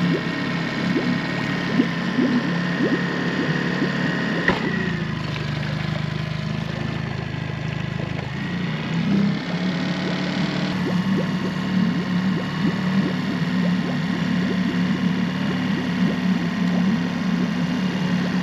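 Small Yamaha outboard motor idling steadily, with a light ticking over the hum and a single knock about four and a half seconds in.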